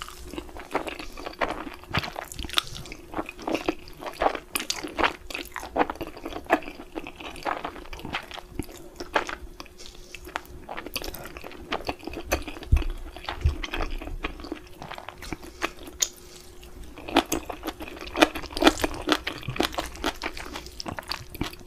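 Close-miked ASMR mouth sounds of eating Korean black-bean-sauce instant noodles: slurping and wet chewing with frequent quick lip smacks and clicks, densest near the end.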